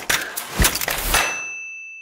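A logo sound sting: a dense noisy rush of hits with a deep boom just over half a second in. It ends about a second in on a single high, bell-like ding that rings on and slowly fades.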